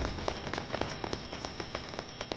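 Burning torches crackling with irregular sharp pops, over a faint steady hiss and a thin high steady tone, slowly fading.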